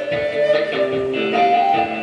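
Guitar strumming under a Native American flute playing long held notes that step down and then up again, in an instrumental gap between sung lines.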